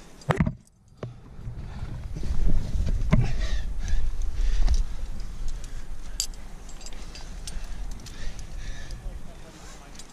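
Wind buffeting a head-mounted camera's microphone as a low rumble, strongest from about two to five seconds in. There is a sharp knock near the start and a few light metallic clicks later on, from the climber's gear.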